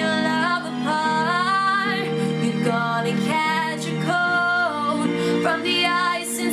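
Woman singing a slow pop ballad over a backing track, her voice sliding up into notes about one and two seconds in and holding one long note in the middle.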